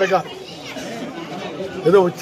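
Speech: a man talking, with crowd chatter under it. His voice drops out for most of the middle and comes back near the end.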